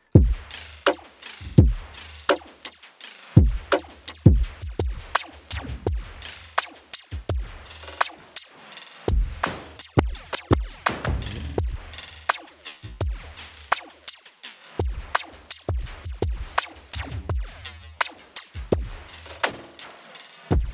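Electronic drum loop played through ShaperBox 3's Liquid Shaper in flanger mode, triggered by the drum hits themselves: kicks, snares and hi-hats in a steady groove, each hit followed by a short flanger sweep.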